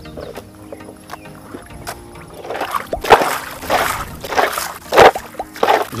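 Faint background music, then from about two and a half seconds in a series of loud water splashes and sloshing right beside a wooden canoe, the loudest about half a second later and again near the end.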